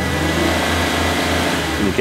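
A car engine revving, with an uneven low pulse under a loud hiss.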